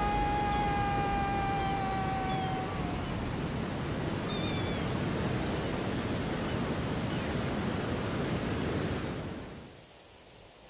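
Steady rush of wind and sea surf that fades away near the end. A long, slightly falling held tone dies out in the first three seconds, and a few faint high chirps sound over the rush.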